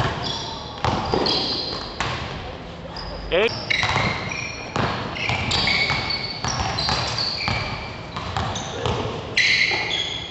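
Basketball game in a large, echoing gym: sneakers squeak on the court again and again in short high chirps, mixed with the thuds of the ball bouncing and players' voices.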